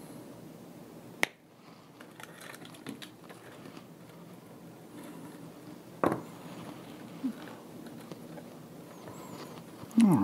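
Two sharp snips of flush cutters cutting through power-supply wires, one about a second in and a second about six seconds in, with soft rustling of the wire bundle between.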